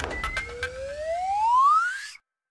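Cartoon sound effect: a single whistle-like tone sliding steadily upward in pitch for about a second and a half, the comic rising glide of a character being flung into the air. A few short woodblock-like clicks sound near the start.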